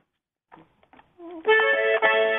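Near silence with a few faint clicks, then about one and a half seconds in an accordion starts playing a sustained chord, the opening of a song.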